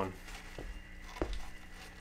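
Quiet room tone with a faint steady hum, broken by two light clicks about half a second and a second in.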